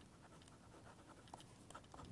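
Faint scratching and light ticks of a digital pen writing on paper, with a few more strokes near the end.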